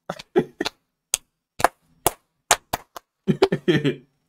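A string of sharp, uneven hand claps, roughly two a second, from a man clapping as he laughs. Laughter comes in near the end.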